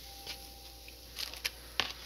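Quiet kitchen room tone, then a few short clicks and rustles about a second in: handling noise.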